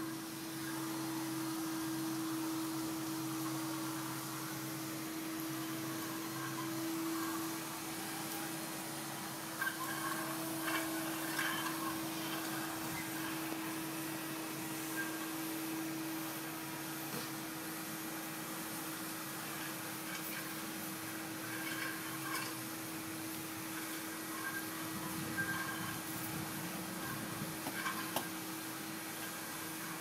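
A steady mechanical hum holding one pitch, with a deeper hum beneath it that drops away about seven seconds in, and a few faint scattered knocks and noises.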